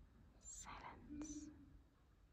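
A faint whispered word or two, lasting about a second, in near silence.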